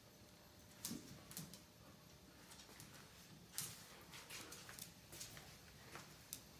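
Dog's claws clicking and tapping on a hard tile floor as a husky moves about playing with a cat: a handful of scattered sharp taps, faint overall.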